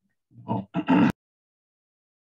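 A man says "oh" and then clears his throat once, a short rough burst that stops abruptly about a second in.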